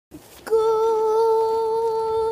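A girl's voice holding one long, steady, high note, starting about half a second in after a short click.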